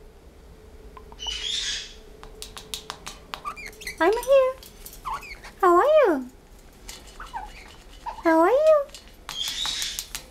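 Blue-headed pionus parrot calling: three loud, clear, talk-like calls, each rising then falling in pitch, about four seconds in, at six seconds and near the end, with two short hissy bursts and scattered light clicks in between.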